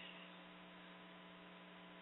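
Near silence: a faint steady electrical hum with light hiss in the recording.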